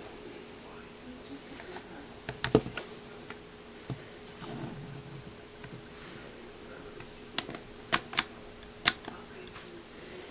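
Handheld digital multimeter being handled and set down: irregular sharp clicks and knocks, a few near the start and a louder cluster near the end. Underneath is a faint steady hum from a small homemade pulse motor spinning a CD disc.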